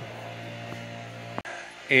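Soft background music with held guitar notes under a pause in the talk, and a single short click about one and a half seconds in.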